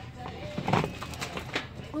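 Shop-floor background: faint voices and soft background music, with a few short knocks or clicks in the second half, and a woman saying "Oh" at the very end.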